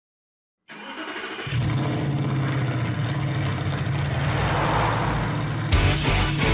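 Intro of a rock song: after a brief silence a low, steady rumble builds with a rising swell. Near the end the full band with electric guitar comes in abruptly.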